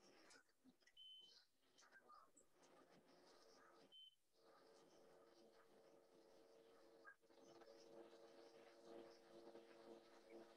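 Near silence: the running Vitamix blender is almost entirely cut out by Zoom's noise suppression, so only a faint steady hum is left, a little stronger in the last few seconds.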